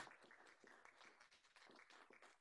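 Faint applause from an audience: a dense patter of soft claps.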